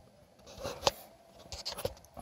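Faint handling noises: light rustles and scrapes with a sharp click a little under a second in and a few lighter clicks near the end.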